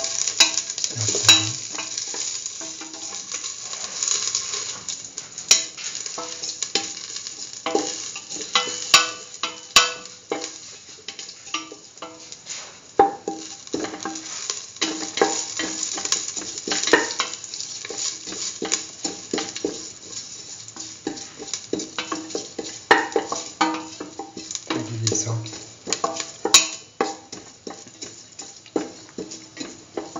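Fennel and nigella seeds sizzling in a little hot oil in a stainless steel pan while being stirred, with irregular scrapes and taps on the metal.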